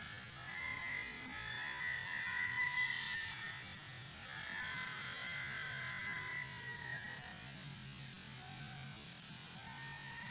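Steady, high-pitched trilling calls of small animals, several overlapping tones held for seconds at a time, over a faint low hum.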